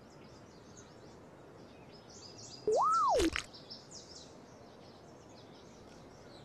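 Comic sound effect: one whistle-like tone that slides up in pitch and straight back down over about half a second, ending in a few sharp cracks, about three seconds in. Faint birdsong chirps underneath.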